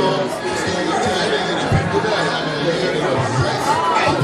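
Several voices talking over one another in a busy chatter, with no single clear speaker.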